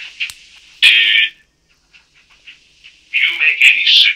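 Tinny, band-limited speech from a recorded police interview, with a near-quiet gap of about a second and a half in the middle.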